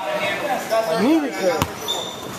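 A basketball bouncing once on a hardwood gym floor, a single sharp knock about a second and a half in, under background voices in the hall.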